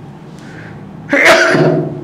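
A man sneezes once, a single loud burst about a second in, after a faint breath in.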